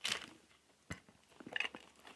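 Quiet handling sounds of items being taken out of a handbag: a brief rustle, a single sharp click about a second in, then light rustling as a hand reaches into the bag.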